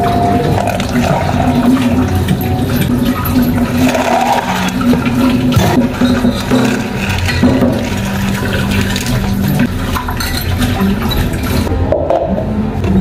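Tea being poured from a glass measuring jug into a plastic cup of ice: a steady rushing, splashing pour of liquid, with background music underneath.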